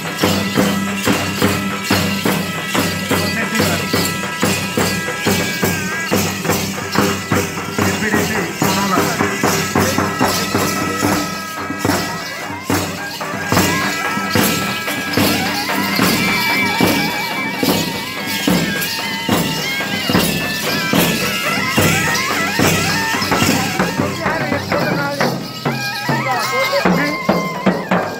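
Live music for a Gond Gusadi dance: fast, steady drumming with jingling percussion, and a shrill reed pipe holding long notes over it.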